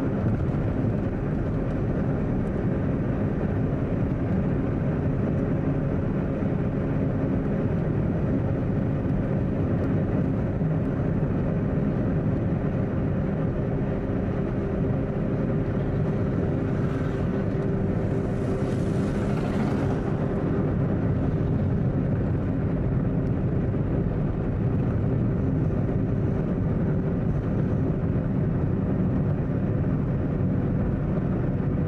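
Steady low drone of a running vehicle, with a few faint steady tones in it and a short hiss about two-thirds of the way through.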